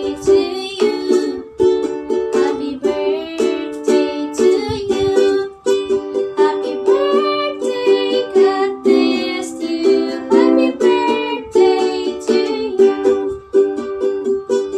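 A woman singing a song to her own strummed ukulele, with steady, regular strums under the melody.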